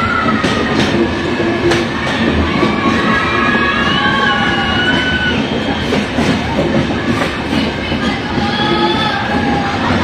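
Karwar Express train running on the rails, a steady rumble with irregular clacks of the wheels and a wavering, high-pitched squeal of the wheels that rises and falls.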